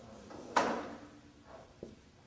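Marker writing on a whiteboard: one loud scratchy stroke about half a second in that fades over about half a second, then a small click near the end.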